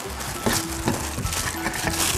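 Tissue paper and packaging rustling and crinkling as hands move a satin doll snowsuit around in a cardboard box, with background music playing softly underneath.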